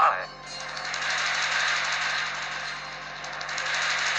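Dramatic TV-serial background sound effect: a fast rattling roll, like a rapid drum roll, that swells, dips about three seconds in, and swells again.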